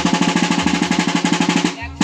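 Fast, even roll on a double-headed drum, about a dozen strokes a second, stopping abruptly near the end, over a faint steady ringing tone. It is the percussion accompanying a Maguindanaon Sagayan war dance.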